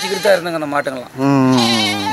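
A man talking in Tamil, and from a little past halfway a long, wavering bleat from a farm animal in the pen.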